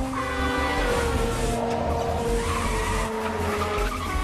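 A car driven hard with its tyres squealing over the engine, mixed with dramatic soundtrack music.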